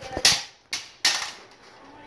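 Two short, sharp bursts of rustling knock with a click between them, the sound of a phone being bumped and rubbed as it is swung around.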